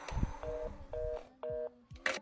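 Telephone line tone from a handset: three short two-tone beeps about half a second apart, like a fast busy (reorder) signal, the sign of a dead or disconnected line. A soft low thump comes just before the first beep.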